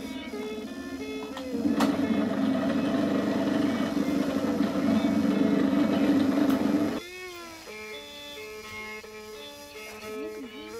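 Small electric grain mill with a funnel hopper running, a loud, steady hum and rasp that dips briefly early on and cuts off suddenly about seven seconds in. Background music with a plucked-string melody plays throughout.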